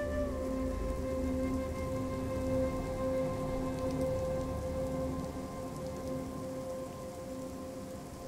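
Recorded rain falling, laid under the track's long held notes: a sustained tone that steps down slightly just after the start, over a lower tone that pulses on and off.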